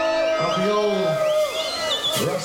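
A live reggae band playing, with a man's voice on long, sliding held notes over it.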